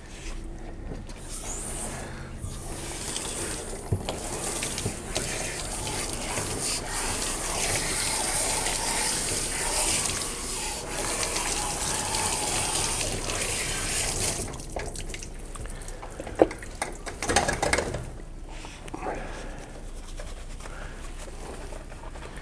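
Water spraying from a hose nozzle onto a dog's coat and into a bathtub, starting about a second in and stopping about two-thirds of the way through. A few knocks follow.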